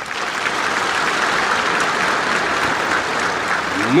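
Applause from a large audience, steady and even, filling a pause in a speech.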